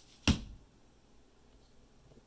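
One sharp knock about a third of a second in, then quiet room tone.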